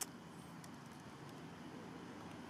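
Faint steady low background rumble, with one sharp click at the very start.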